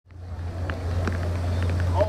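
Live venue room noise fading in: a steady low hum with faint murmur and a few small clicks.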